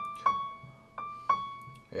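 Piano playing a right-hand practice figure in a dotted rhythm: the upper fingers alternate between two neighbouring notes above a sixth held by the thumb. Two pairs of quick notes about a second apart, each note ringing on.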